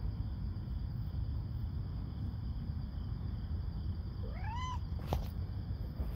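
A domestic cat meows once, about four seconds in: a short call that rises then falls in pitch. A sharp click follows just after, over a steady low rumble.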